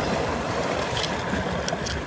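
Steady wash of seawater and surf around tide-pool rocks, with a low rumble and a few faint ticks.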